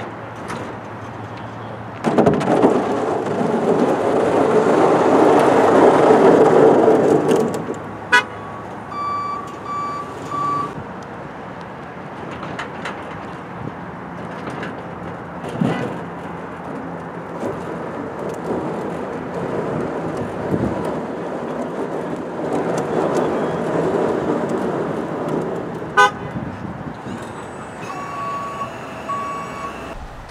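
Snowplow truck engine running, loudest for a few seconds early on as it pulls forward. A series of short, high beeps sounds about eight seconds in and again near the end.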